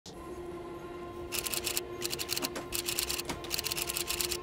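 Rapid typing clicks in four short runs, starting about a second and a half in: a keyboard-typing sound effect for text appearing on screen. Under them is a steady hum.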